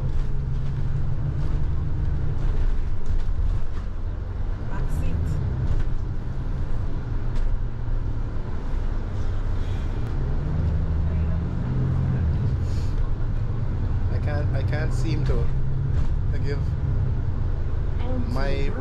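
Inside the upper deck of a moving London double-decker bus, a diesel-electric hybrid: a steady low drive drone that rises and falls in pitch a few times as the bus speeds up and slows. Brief voices come in near the end.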